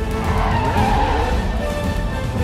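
TV drama opening theme music, with a brief screech of skidding car tyres from about half a second in to just past a second.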